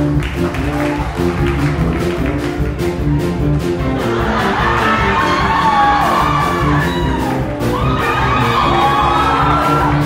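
Live band, with piano and bass, playing an instrumental introduction: a steady beat under repeated chords. A higher melody line with sliding notes comes in about four seconds in.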